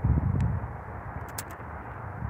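Low, uneven outdoor rumble, loudest in the first half-second, with a few faint clicks about a second in.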